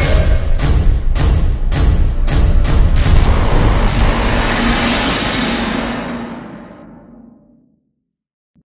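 Logo sting: a sudden loud boom, then a string of sharp percussive hits about every half second, then a long low rumble that fades out near the end.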